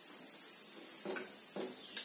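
A whiteboard being wiped clean with a duster, three soft rubbing strokes about a second apart in the second half, under a steady high-pitched trill like insects chirring.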